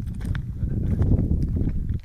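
Low rumbling noise with a few soft knocks: wind buffeting the microphone and the phone being handled as the person filming moves.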